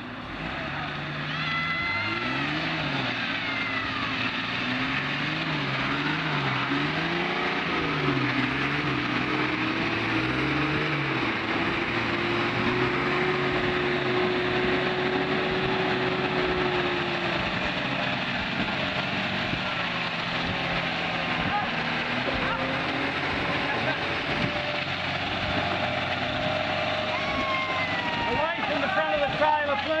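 Vehicle engines labouring under load in a snatch-strap recovery, a four-wheel drive pulling a bogged minibus through mud, over a steady hiss. The revs rise and fall several times in the first ten seconds, then climb and hold high for several seconds before dropping away.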